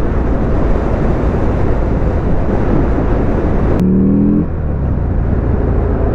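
Buell XB12X's air-cooled V-twin engine running on the move under heavy wind and road noise. Near four seconds in there is a click, then a short rising engine note.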